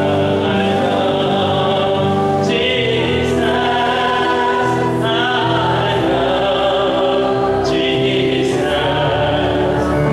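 Worship song: a man singing over sustained electronic keyboard chords, the chords changing every two to three seconds.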